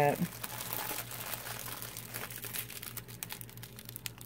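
Small clear plastic bags of diamond-painting resin drills crinkling as they are handled and sorted through by hand, a steady run of small irregular crackles.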